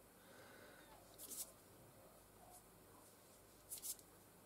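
Near silence with two brief, faint rustles of fingertips rubbing together, one about a second in and one near the end, as sticky PVA glue and cornflour are rubbed off the fingers.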